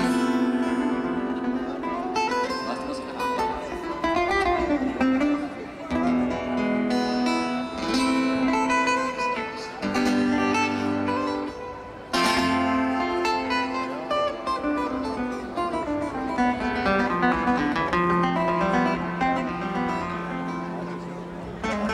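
Acoustic guitars playing live, plucked and strummed notes over held bass notes, with a short break in the playing just before the middle.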